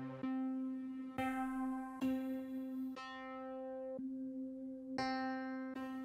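A keys preset from Native Instruments' Ignition Keys software instrument playing: one low note held steady while new notes or chords are struck over it about once a second.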